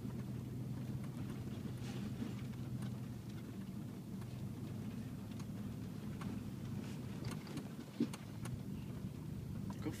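Engine and tyre noise of a vehicle driving slowly on a dirt road, heard from inside the cab as a steady low drone, with a single short knock about eight seconds in.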